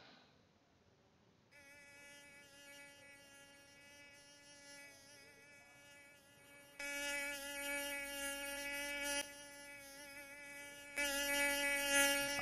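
Mosquito buzzing in a steady whine. It comes in faintly about a second and a half in, gets much louder about seven seconds in, dips for a couple of seconds, then grows louder again near the end.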